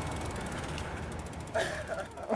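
Steady background hiss, with a short burst of a person's voice about one and a half seconds in.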